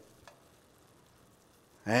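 Faint, steady sizzle of large meatballs simmering in sauce in a pan on the stove, with a small click about a quarter second in.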